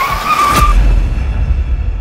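Car tyres screeching under hard braking, a steady high squeal of under a second, cut off by a sharp crash-like hit and a loud deep boom that slowly fades.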